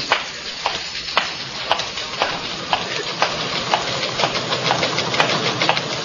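Radio-drama sound effect of footsteps on a hard floor, an even walk of about two steps a second, over a steady background hiss.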